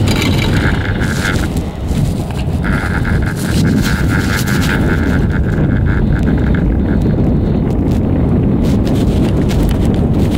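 Riding a chairlift: wind buffeting the microphone as a continuous low rumble, with a steady high whine for a moment at the start and again for several seconds in the middle. Near the end a run of clicks comes in as the chair nears a lift tower.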